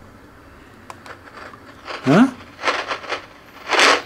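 Ghost box (spirit box) radio sweeping the FM band, putting out short bursts of static through its noise filter as its volume is slowly raised during calibration. There are two bursts in the second half, the louder one near the end.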